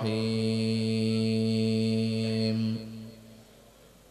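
A man's voice chanting Quranic recitation over a microphone, holding one long, steady note that breaks off about three seconds in.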